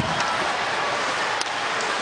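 Steady arena crowd noise during play at an ice hockey game, with a single faint click about one and a half seconds in.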